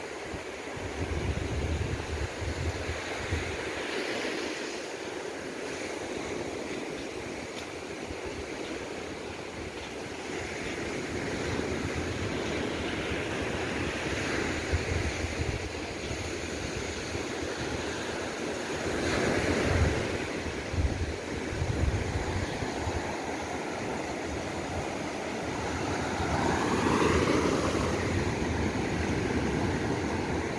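Surf breaking on a sandy beach, a steady wash that swells and fades, with wind gusting on the microphone. A short rising tone sounds near the end.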